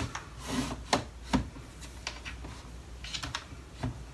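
Clear plastic stackable organizer drawers and small jars being handled and moved on a dresser top: a handful of sharp plastic clicks and knocks, the loudest two close together about a second in, with some rubbing between them.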